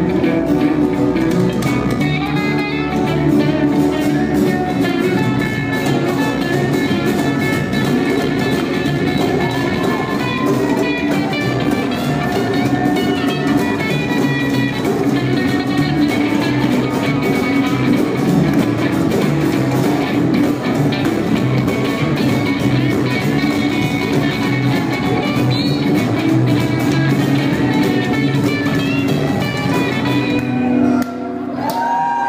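A live band playing an instrumental passage with no vocals: guitars over plucked upright bass and drums.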